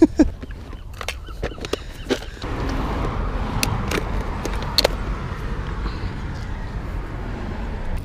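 Steady traffic noise from a road, with a few sharp clicks of plastic tackle boxes being handled. The noise sets in about two and a half seconds in.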